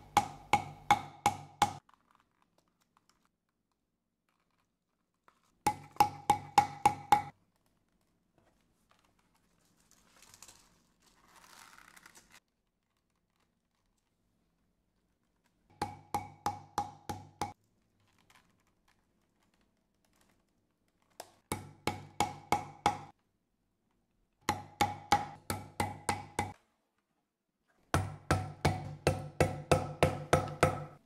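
Metal hammer setting rivets through leather and nylon straps on an anvil: quick runs of about five or six blows, roughly three a second, each blow ringing metallically. Six such runs come with short silent pauses between them.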